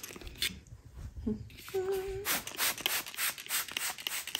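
Folex spot remover squirted from a trigger-spray bottle onto bed sheets: a run of quick hissing spray pumps a few tenths of a second apart, coming faster in the second half. A short hum-like voiced sound falls near the middle.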